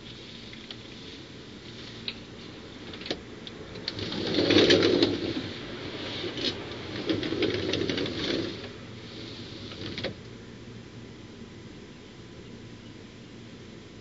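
Scraping and rustling as a person gets up and moves about, in two louder bursts with a few sharp clicks, over a steady low hum.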